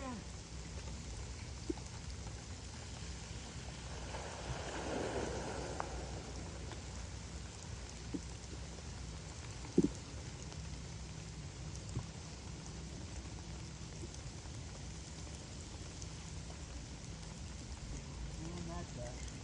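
Quiet wet-woodland ambience: an even, steady hiss of light rain over a low steady hum, with a soft swell about four to six seconds in and a single sharp knock near ten seconds.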